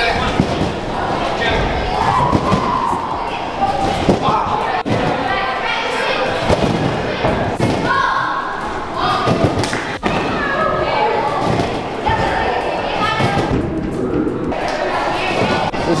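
Repeated heavy thumps of people bouncing and landing on trampolines in a large echoing hall, over a steady background of voices.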